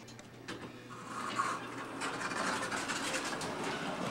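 Elevator car running: a steady low hum comes on right at the start, joined about a second in by a grainy rushing noise that grows slightly louder and holds.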